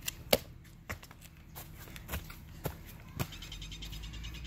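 Scattered light knocks and scuffs of sneakers and hands as a person jumps up onto a low concrete ledge and scrambles onto the grass slope. The sharpest knock comes just after the start.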